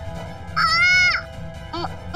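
A young girl crying out in pain from an injury: a long, high "aah" about half a second in, then a short "ah" near the end, over sustained background music.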